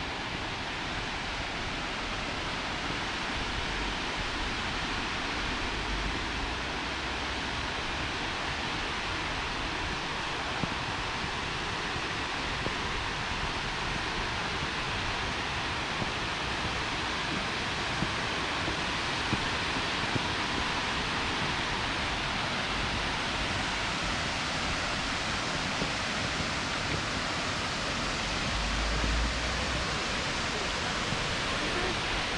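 Steady rushing of Tvindefossen waterfall, water cascading down a tiered rock face. A low rumble of wind on the microphone comes in near the end.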